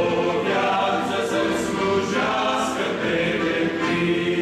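Men's vocal ensemble of about a dozen voices singing a church hymn in harmony, holding long chords that change every second or so.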